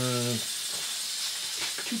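A man's drawn-out word trailing off, then steady hiss with a soft knock near the end as a small 3D-printed plastic robot is set down on a wooden floor.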